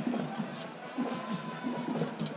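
Stadium crowd noise from the stands with music in it and faint voices, and a thin held tone through the second half.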